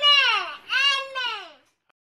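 A young child crying out twice, each high cry rising and then falling in pitch, stopping about a second and a half in.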